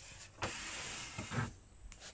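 Handling noise on a plastic boombox casing: a knock, then a short, steady sliding rub, then a dull thump.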